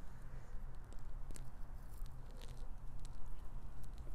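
A steady low hum and rumble with a few faint, scattered small clicks and rustles, the sort of handling noise made by a phone held close to the ground.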